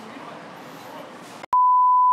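Low, steady background noise, then a sharp cut about a second and a half in to a loud, steady single-pitch beep. The beep is a broadcast test tone of the kind laid under colour bars.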